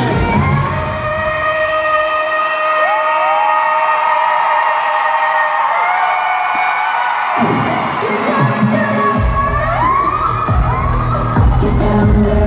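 Live pop music over an arena sound system, heard from among the crowd. The bass drops out about a second in, leaving held notes and rising, gliding high voices, then the beat comes back in strongly about eight to nine seconds in.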